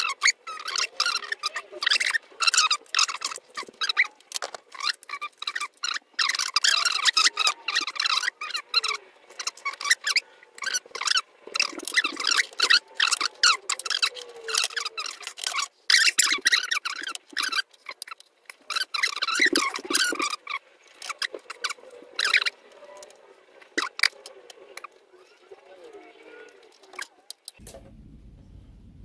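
Hands working the wiring of a small 3D printer, pulling wires and plastic cable sleeving loose: a busy run of crackles and clicks that thins out and quietens in the last few seconds.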